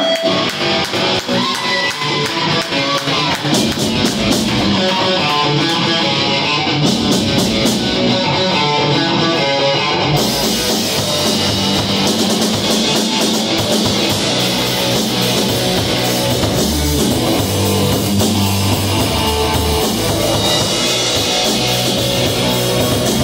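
Live rock band playing an instrumental passage on electric guitar, drum kit and electric bass, with no singing. The sound fills out about ten seconds in, with cymbals and heavier bass joining.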